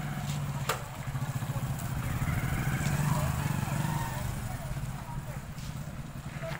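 Motorcycle engine running close by with a steady low note, growing louder through the middle and easing again near the end. A single sharp click comes just under a second in.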